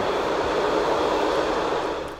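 Car-carrying train running through a rail tunnel, a steady rushing rumble heard from inside a car riding on one of its wagons.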